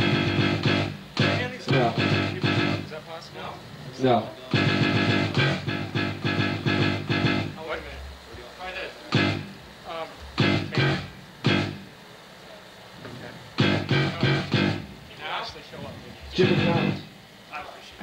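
Electric guitar through an amplifier, played in short bursts of strummed chords two to three seconds long with pauses between, as loose playing during a soundcheck rather than a song.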